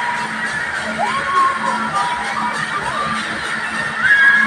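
Loud fairground ride music with riders shouting and whooping over it, several short rising cries standing out about a second in.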